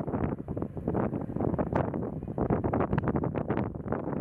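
Wind buffeting the microphone: an uneven, gusty rumble that rises and falls throughout.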